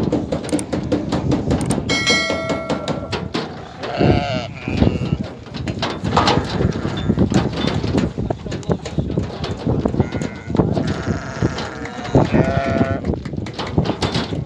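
Fat-tailed sheep bleating in long calls, about two seconds in, around four seconds, and again from about ten seconds on, as they are let down from a truck's stock bed, with a steady clatter of knocks and hooves and men's voices underneath.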